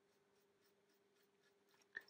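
Near silence: faint, light scratching of an almost-dry, stiff-bristled paintbrush worked over a model wagon's side, with a faint steady hum underneath.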